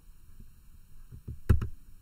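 A sharp double click with a low knock under it, about one and a half seconds in, from the computer as the slideshow is advanced to the next slide. A few faint ticks come just before it.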